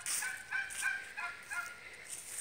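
Poultry calling: a quick series of short, high-pitched calls that grow fainter toward the end.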